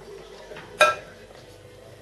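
A single sharp clink of kitchenware, with a short ring, about a second in, as the pot and bowl are handled for serving the soup. Otherwise only faint room background.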